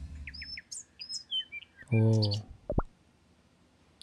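Small birds chirping in short, high calls for about the first two seconds.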